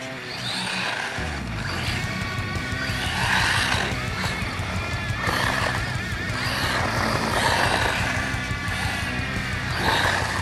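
Brushless electric motor of a 1/16-scale RC truck whining, its pitch rising and falling with the throttle, and dropping near the end as the truck slows.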